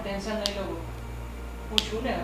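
Background music over a steady low drone, with a melodic voice line in the first half second. Two sharp clicks cut through it, one about half a second in and a louder one near the end.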